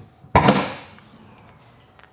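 Front luggage-compartment lid of a Porsche 911 being released and opened: two sharp clunks close together about a third of a second in, fading away afterwards.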